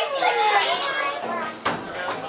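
Football players and spectators calling out and shouting, loudest at the start and fading, with a short sharp knock near the end.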